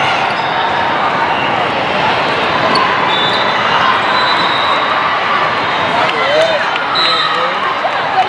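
Indoor volleyball play in a gym: many voices talking and calling over one another, with a few sharp smacks of the ball on hands or the court floor.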